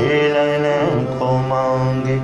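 Male classical vocalist singing a held, ornamented line in Hindustani style, the voice wavering and stepping between notes, over a steady harmonium drone.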